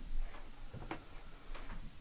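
A few faint, irregular clicks of a computer mouse.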